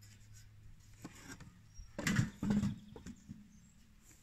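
Thin-walled steel stove body, made from a helium tank, being handled and set upright on a wooden bench: a few short knocks and clunks, loudest about two seconds in.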